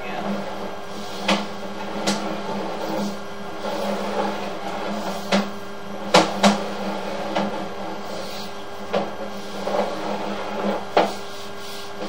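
Sewer inspection camera's push cable being retrieved from the pipe, with irregular sharp clicks and knocks over a steady low hum.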